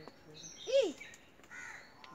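A bird's single loud, short call, rising and falling in pitch, about three-quarters of a second in, with faint high chirps of small birds around it.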